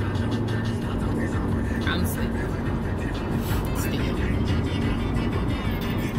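Steady road and engine rumble inside a moving car's cabin, with music playing under it.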